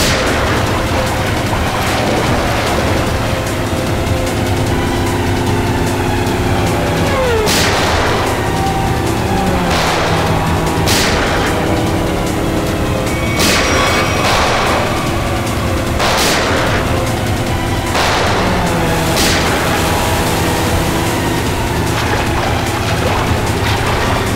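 Dramatic background music of held tones, broken every one to three seconds by heavy booming hits that ring on briefly.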